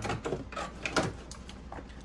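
Light handling noises from a plastic fashion doll held and turned in the hand: a few small, scattered clicks and knocks, over a low steady hum.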